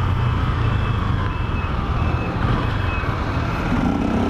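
Motorcycle engine running steadily while riding, with wind and road noise. Faint short high beeps repeat in the background.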